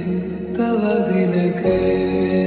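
Slowed-down, reverb-heavy lofi remix of a sad Bollywood song: a held, gliding melodic line over a low sustained tone, with a deep bass note coming in near the end.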